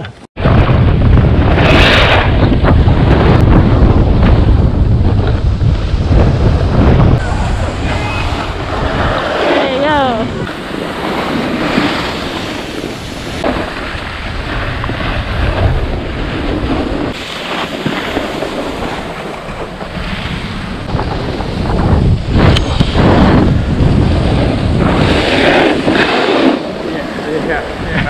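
Wind buffeting the action camera's microphone while skiing downhill, heaviest over the first several seconds, over the steady hiss and scrape of skis on packed snow.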